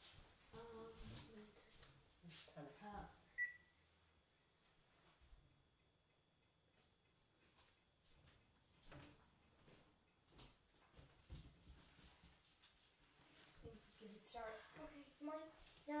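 Mostly a quiet kitchen with faint children's voices, and a single short electronic beep about three seconds in from an oven control panel's keypad as its timer is being set.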